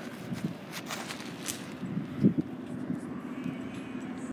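A steady low background hum, with a few bumps and rubs from a phone being handled, the loudest bump about two and a quarter seconds in.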